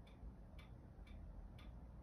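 Near silence: faint room tone with soft, evenly spaced ticks, about two a second.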